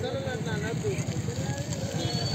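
People's voices talking at a distance over a low, steady outdoor rumble.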